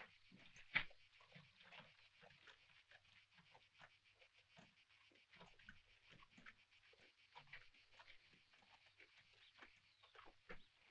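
Near silence: faint, irregular small clicks and rustles over a faint low hum.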